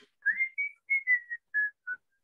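A person whistling a short tune: a first note gliding upward, then about seven short notes stepping mostly down in pitch.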